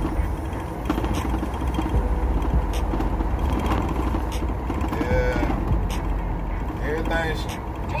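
Road and engine noise inside a moving van's cabin: a steady low rumble, with a short voice sound about five seconds in and another near the end.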